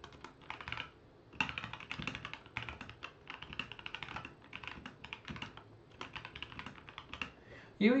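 Typing on a computer keyboard: quick runs of key clicks with a short pause about a second in.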